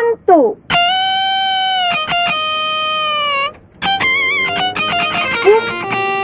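Electric guitar music: a few quick sliding notes, then long sustained notes with bends, a short break about three and a half seconds in, and a wavering phrase that settles into a long held lower note.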